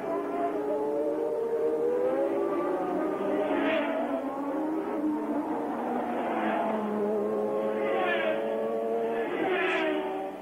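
Formula One race car engines at speed, heard trackside: several engine notes at once, their pitch rising and falling as the cars accelerate, shift and pass, with a few brief louder flares.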